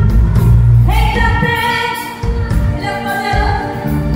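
A woman singing a gospel song live into a microphone over a band with a heavy bass line, holding sung notes of about a second each.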